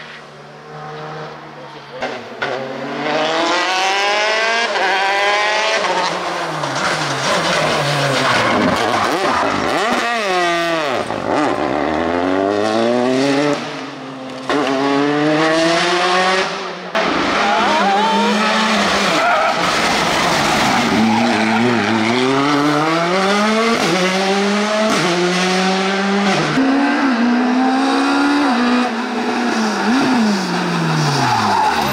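Rally cars at full throttle, one after another: each engine's pitch climbs as the car pulls through a gear and drops back at every shift, over and over. There is one swoop down in pitch about ten seconds in.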